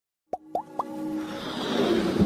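Animated-logo intro sound effects: three quick blips that each glide upward in pitch, followed by a swelling whoosh that builds towards the end.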